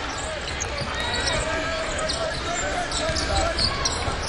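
Basketball arena game sound: steady crowd noise with scattered shouting voices, and a basketball being dribbled on the hardwood court.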